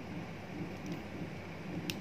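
Quiet handling of hard PVC figure parts over a steady low room hum, with a short sharp click near the end as the figure's shoe piece is pushed onto the peg of its leg.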